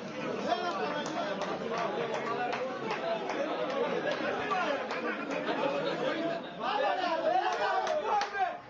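Many men's voices talking and shouting over one another as players and onlookers celebrate a goal, growing louder near the end.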